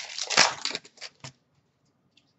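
Foil wrapper of a trading-card pack being torn open and crinkled in the hands: a run of crackling rustles that stops a little over a second in.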